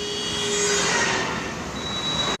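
Road traffic noise: a passing vehicle's rushing sound swells about a second in and then eases off, with a faint steady hum underneath.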